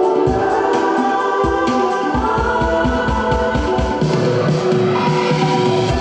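Live electronic dance-pop played through a PA: sustained synthesizer chords over a steady kick-drum beat, with a voice singing. A deeper bass line comes in about two-thirds of the way through.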